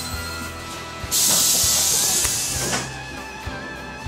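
Over background music, a London double-decker bus's compressed-air system lets out a sudden, loud hiss about a second in, lasting under two seconds before fading out.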